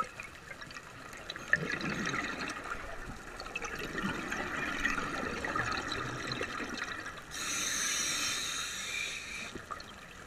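Scuba regulator breathing underwater: exhaled bubbles burble for several seconds, then a hissing inhalation starts about seven seconds in and lasts until near the end.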